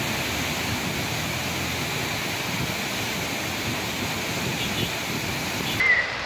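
Steady rush of water from a waterfall in flood, swollen and muddy from days of continuous rain; the sound cuts off abruptly just before the end.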